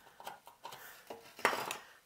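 Hand deburring tool scraping the edge of a drilled hole in a metal amplifier chassis in a series of short strokes, with a louder clatter about one and a half seconds in.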